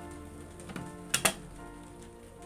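Two sharp clicks in quick succession about a second in, as a knife is handled on the workbench, over steady background music.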